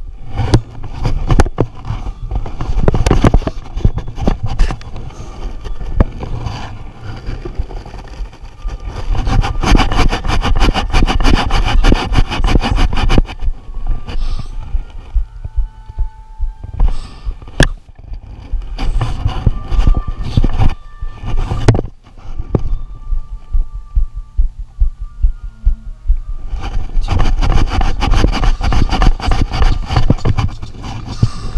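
Marching band playing loud from a microphone mounted on a tuba, with the band's low brass dominating and the sound overloaded at its peaks. The playing drops back twice, about halfway through and again around three-quarters of the way, before swelling again near the end.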